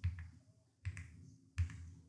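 Two faint computer keyboard keystrokes, one about a second in and another near the end, as the letters of a search term are typed.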